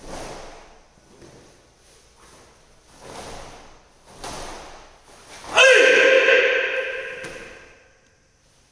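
Karate gi snapping with fast strikes and blocks of a kata, a sharp swish about once a second, then a loud kiai shout about five and a half seconds in that trails off over about two seconds.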